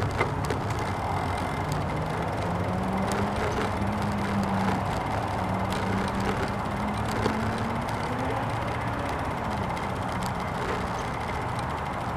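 Steady road-traffic rumble with a low engine hum that rises gently and fades away about eight seconds in.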